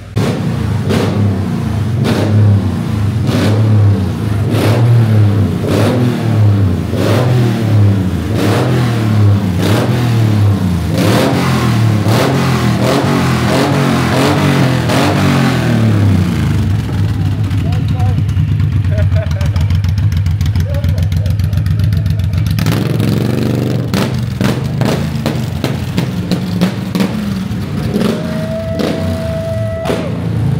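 Motorcycle engine being revved over and over, its pitch rising and falling about once a second, then settling to a steadier run in the second half.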